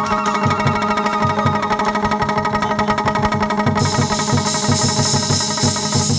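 Instrumental hát văn ritual music: a plucked moon lute (đàn nguyệt) plays a quick running melody over fast, steady drum beats. About four seconds in, a bright rhythmic clashing of cymbals joins.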